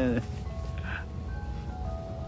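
A faint, simple tune of plain electronic-sounding notes, one after another at different pitches, over a low steady rumble.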